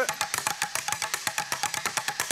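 Two people drumming fast with sticks on the seats of wooden bar stools: a rapid, even run of sharp wooden clacks, many strikes a second.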